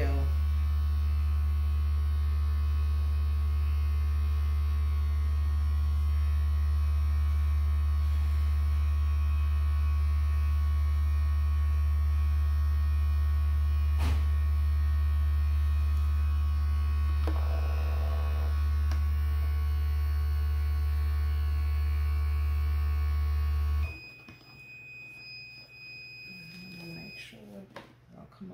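Portable heat press humming loudly and steadily while it presses, its countdown timer running. About 24 seconds in, as the timer runs out, the hum cuts off abruptly and the press gives one steady high beep lasting about three seconds to signal the press time is done.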